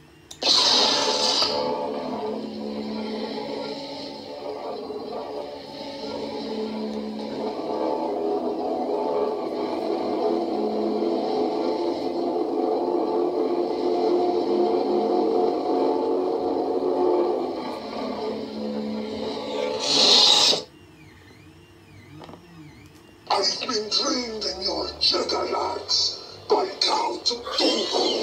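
Proffieboard lightsaber sound font played through the saber's small bass speaker: an ignition burst, then a steady layered hum for about twenty seconds, ending in a retraction burst as the blade shuts off.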